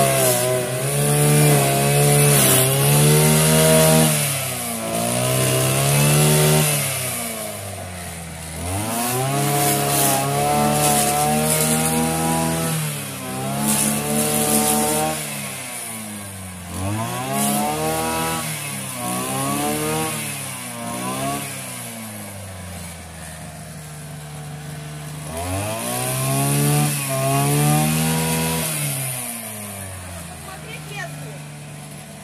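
Petrol string trimmer (brush cutter) with a small two-stroke engine, revving up and falling back again and again as the throttle is squeezed and released while cutting grass. It eases to a lower, quieter speed for a few seconds past the middle, then revs up again near the end.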